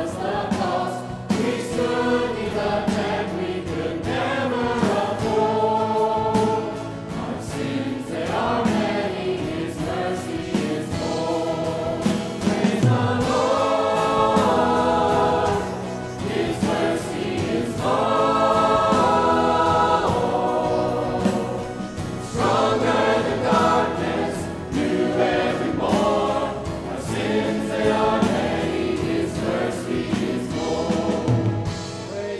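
Church choir and worship vocalists singing a gospel praise song together with instrumental accompaniment, the voices swelling louder in two passages midway through.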